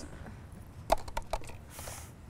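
A small thrown object landing on a hard surface: one sharp tap about a second in, then a few lighter taps as it settles.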